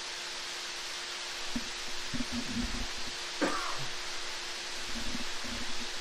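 Wet concrete being pushed with a rake and struck off with a screed board: faint, irregular low scrapes and knocks under a steady hiss and a faint hum.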